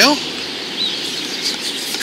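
Steady outdoor background noise, with one short bird chirp about a second in.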